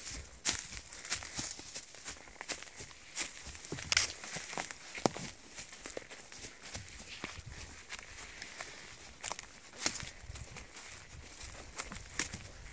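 A horse walking through dense brushwood and young spruce: irregular snaps and crackles of twigs and dry forest litter under its hooves, with branches brushing past, the sharpest snap about four seconds in.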